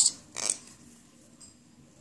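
Near silence: quiet room tone, with one brief soft noise about half a second in.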